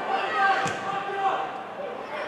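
Players' voices calling out across an open football pitch, with one sharp thud of a football being kicked less than a second in.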